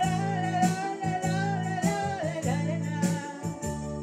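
A woman singing a Tamil song to her own electronic keyboard accompaniment. She holds one long, wavering note that falls away a little past halfway, over a steady beat and a sustained bass line.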